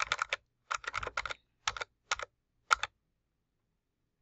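Computer keyboard keys clicking in quick clusters for about three seconds, then stopping.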